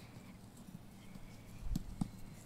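Faint sounds of boys playing soccer on grass: soft scuffing footsteps and light taps, with one duller low thump of the ball being kicked about three-quarters of the way through.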